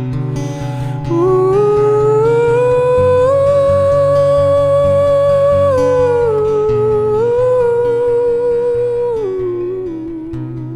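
A man's wordless vocal melody over a strummed acoustic guitar. The voice comes in about a second in, slides up to a long held high note, then steps down, back up, and down again near the end.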